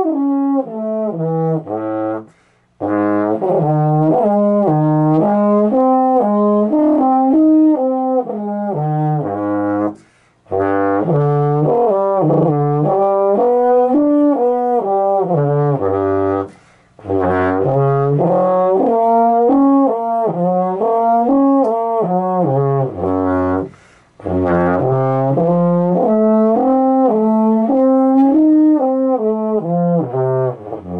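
Baritone played in lip slurs, a brass warm-up exercise: runs of slurred notes stepping down and back up between the horn's harmonics, in several phrases with short breaths between them.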